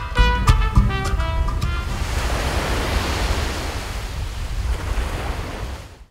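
Brass music ends about two seconds in, leaving a steady wash of waves on the beach with wind, which fades out at the end.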